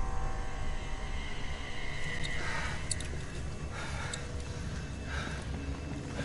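Film sound after a car crash: a low rumble dying away, with three soft rushing swells and a few faint ticks.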